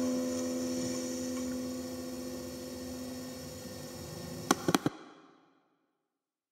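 The last chord on a plucked acoustic string instrument rings out and slowly fades. A little after four and a half seconds in come three sharp clicks close together, and then the sound cuts off suddenly.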